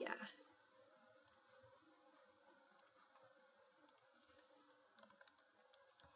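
Near silence with faint, scattered computer keyboard keystrokes as a word is typed.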